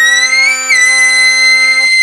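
Two trumpets playing a duet: one holds a steady low note while the other slides up into an extremely high, whistle-like note, steps down slightly and holds it. The low note stops near the end while the high note carries on.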